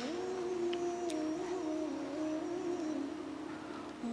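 Soft background music: a bed of several held notes, like a hummed or synthesized drone, moving slowly up and down in steps.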